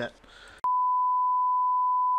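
Bars-and-tone test signal: a single steady, high-pitched beep that cuts in abruptly under a second in and holds at one unchanging pitch.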